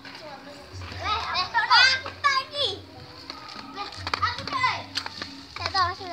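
Children's high-pitched voices calling out while playing, in two bursts with a lull in between.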